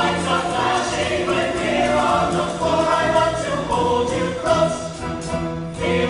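Mixed show choir singing an upbeat song in full voice with instrumental backing, with a brief break near the end before the next phrase comes in.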